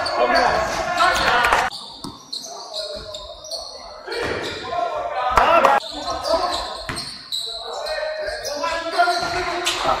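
Sound of a basketball game in a large, echoing sports hall: the ball bouncing on the wooden court, with players' voices. The sound drops away for a couple of seconds about two seconds in, then picks up again.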